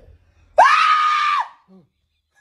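A person's loud, high scream, starting suddenly about half a second in and held at one steady pitch for about a second, used to startle someone awake. A short cry that falls in pitch follows just after.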